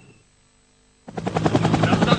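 Near silence for about a second, then a loud, rapid pulsing sound cuts in suddenly.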